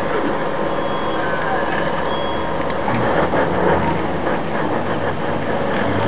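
Tour bus engine running steadily with road noise, heard from inside the moving bus.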